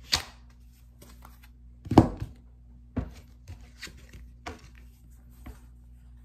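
Decks of tarot and oracle cards being picked up and handled over a table: a string of knocks and taps, the loudest about two seconds in.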